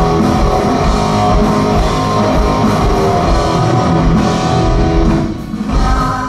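Live rock band playing an instrumental passage: electric guitar over a drum kit, with no vocals. About five seconds in the band thins out and the level drops briefly.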